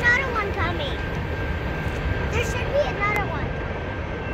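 Steady low rumble of a freight train's tail end, tank cars rolling away down the line, with two short bursts of high-pitched children's voices over it.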